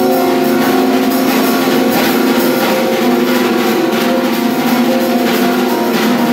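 Free improvisation for drum kit and upright piano: held piano notes ring on while the drums and cymbals are struck at irregular intervals, with no steady beat.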